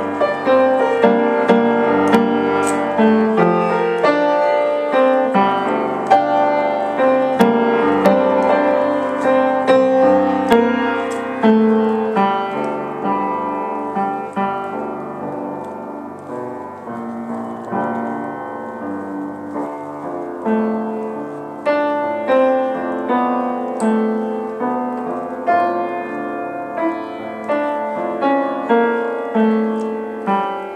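Solo piano improvisation: a continuous flow of notes and chords, growing softer through the middle and building again toward the end.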